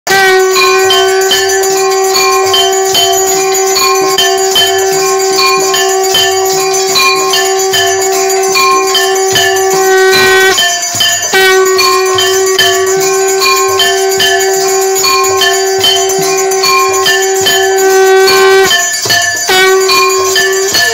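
Temple aarti: bells ring in a quick, even rhythm over one long, held, horn-like tone. The tone breaks off briefly about halfway through and again near the end.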